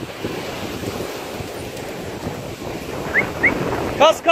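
Sea surf breaking on a sandy shore, a steady rushing wash, with wind buffeting the microphone.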